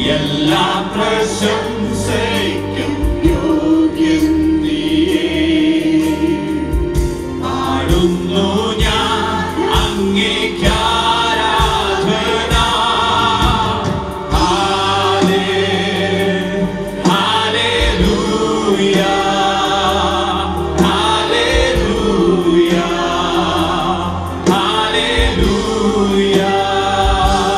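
Live gospel worship song: several men and women singing together into microphones, accompanied by keyboard and acoustic guitar.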